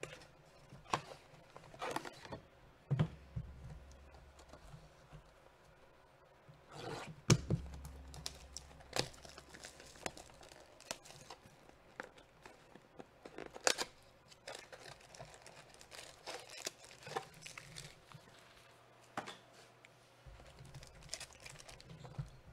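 Clear plastic wrap being torn and crinkled off a trading-card hobby box, with the cardboard box and foil card packs handled, in scattered rustles and clicks. The two sharpest snaps come about seven and fourteen seconds in.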